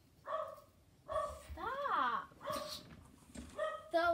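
A dog giving several short yelps and one longer whining call that rises and falls in pitch.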